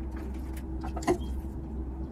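Food-handling noises: a few light clicks and one sharper click about a second in, over a steady low hum.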